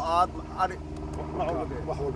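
Men talking in short bursts over a steady low hum.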